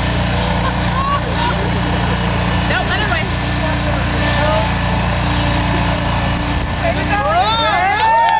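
Lawnmower engine running steadily under people's voices. Loud shouts and cheers break out near the end.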